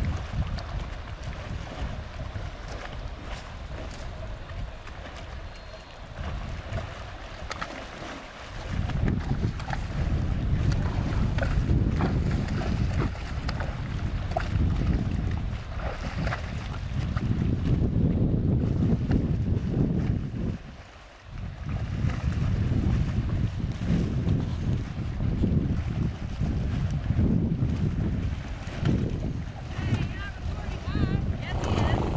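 Wind buffeting the microphone in gusts, with the splashing of horses wading through shallow lake water; the wind eases briefly about two-thirds of the way through.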